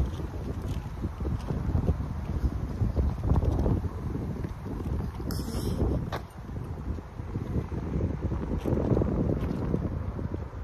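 Wind buffeting the microphone outdoors: a gusting low rumble that rises and falls.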